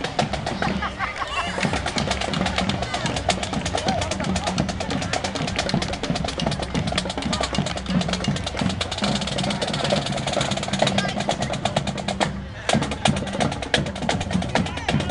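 Marching band playing as it passes, a rapid, steady snare drum beat over sustained low notes. The playing breaks off for a moment near the end and then starts again.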